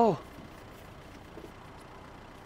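A man's voice ends a word at the very start. Then a faint, steady, low background rumble follows, the ambience heard from inside a parked car.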